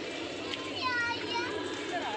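A young child's high-pitched wordless voice, one short call of about half a second near the middle, wavering in pitch.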